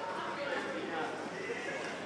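A man and a woman laughing, their voices wavering and breaking up.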